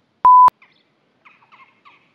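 A single short electronic beep, one steady high tone lasting about a quarter of a second that starts and stops abruptly, followed by faint birds chirping several times in the second half.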